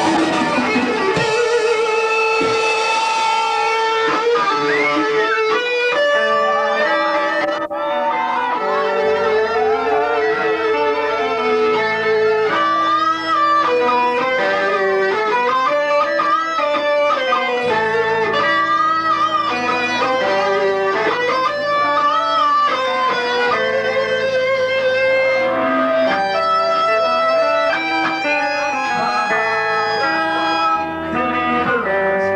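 Live rock band's electric guitars playing a loud melodic line of held, wavering notes over low bass notes.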